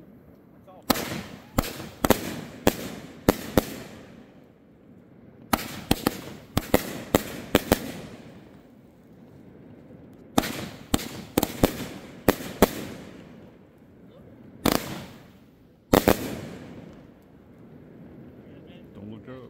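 Fireworks going off: three volleys of sharp, echoing bangs, each five to seven reports about half a second apart, then two single bangs near the end.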